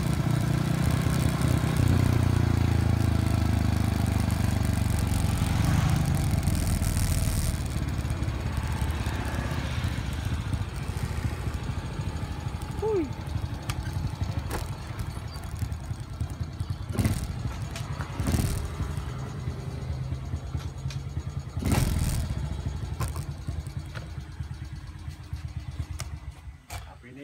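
Honda Win motorcycle's single-cylinder engine running as it is ridden, with wind noise on the microphone. After about eight seconds the wind drops away and the engine goes quieter as it slows. A few sharp knocks follow in the second half.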